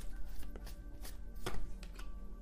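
Tarot cards being handled and drawn from the deck: a handful of irregular sharp clicks and taps, over faint steady background music.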